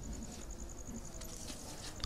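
Faint insect chirping, most likely a cricket: an even train of high notes, about ten a second, over quiet room tone, with a few soft clicks.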